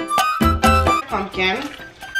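Background music with plucked strings and a steady beat. About a second in, a sliding, voice-like passage takes over, and the music dips briefly just before the end.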